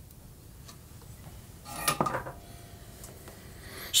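Handling noise at an electronics workbench: a faint tick about two-thirds of a second in, then a brief clatter of small hard objects about two seconds in, with a short ring.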